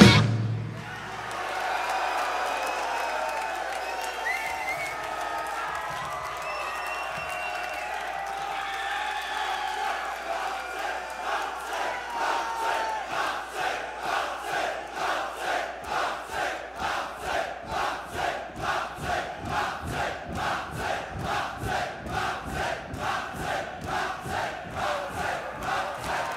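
A metal band's last chord cuts off, and a concert crowd cheers, shouts and whistles. About ten seconds in, the crowd falls into rhythmic clapping, a little over two claps a second, that grows steadily louder.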